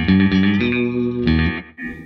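Telecaster electric guitar played through a Line 6 Spider IV 75 amp set to its Twang model: a short phrase of several held notes that changes pitch a few times and stops shortly before the end.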